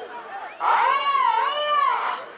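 A man's long, loud, drawn-out shout of "aah", wavering up and down in pitch, starting about half a second in, over fainter voices of the crowd.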